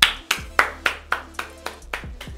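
One person clapping hands in a steady run, about four claps a second, in celebration.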